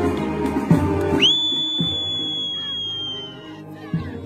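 A brass band plays for about a second and then drops away. A long high whistle note follows: it swoops up into a steady shrill tone, is held for about two seconds and sags slightly in pitch as it fades.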